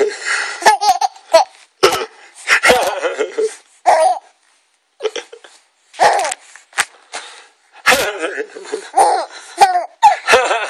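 A baby laughing in repeated bursts, with brief pauses between them.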